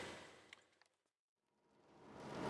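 Near silence: the sound fades out in the first half second and starts fading back in at the very end.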